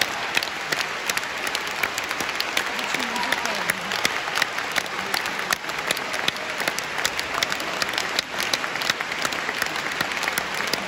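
Audience in a concert hall applauding steadily, dense clapping after a song ends, with a few voices calling out in the middle.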